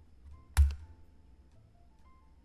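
Faint background music of sparse, soft held notes, with one sharp click and low thump about half a second in as the Stand button is clicked on the blackjack game.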